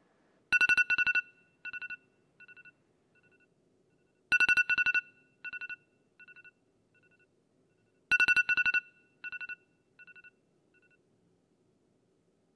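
Smartphone alarm ringing: three rounds about four seconds apart, each a quick cluster of loud high beeps followed by fainter repeats that fade away.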